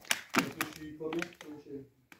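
A few sharp clicks or taps, the loudest about a third of a second in, with faint voices between them.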